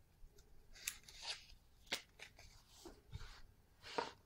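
A sheet of cut adhesive vinyl being handled close by: faint crinkling rustles broken by a few sharp crackling clicks, the sharpest at the very end.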